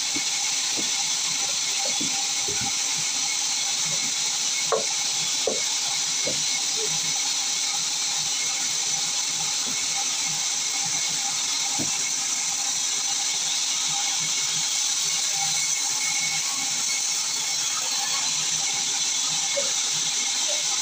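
Sawmill band saw running steadily while a log is fed through the blade, a continuous high hiss of the cut with a steady tone beneath it. A few sharp knocks of wood being handled come about five seconds in and again near twelve seconds.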